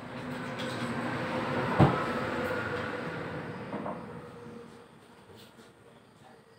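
A passing vehicle's rumbling noise, building up, loudest about two seconds in with a single sharp click, then fading away over the next few seconds.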